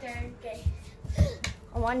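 Children's voices in a small room, with a few short, soft thuds of bare feet on the floor. Right at the end a child starts a count-off with "one".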